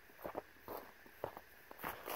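Footsteps on rocky, grassy ground close to the phone: several soft, separate steps, a little louder near the end as the walker reaches it.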